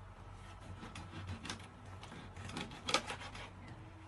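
Kitchen knife chopping through a fish on a plastic cutting board: a few irregular knocks, the loudest about three seconds in.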